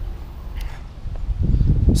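Wind buffeting the camera microphone: a low, gusty rumble that eases about a second in and builds again toward the end.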